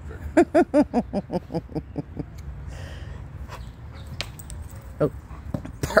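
A Labrador retriever giving a quick run of about ten short, pitched whining yelps, about five a second, fading away after about two seconds: excited whining while it waits for the ball to be thrown. A few sharp clicks follow near the end.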